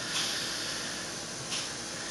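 Steady background hiss of room and recording noise, with no other sound.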